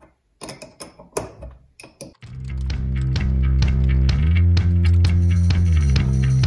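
A few sharp metal clicks and taps from a wrench turning a screw on a small machinist's rotary table. About two seconds in, background rock music with guitar fades in and takes over.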